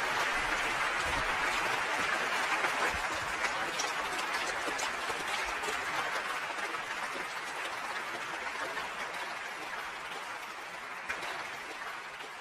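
An audience applauding, a dense patter of many hands that slowly dies away.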